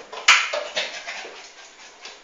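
A small dog's sounds, with one sharp knock about a third of a second in, the loudest thing heard.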